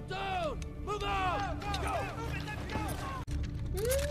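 War-drama soundtrack: overlapping voices with rising and falling pitch over a steady low rumble, broken off sharply about three seconds in at a scene cut.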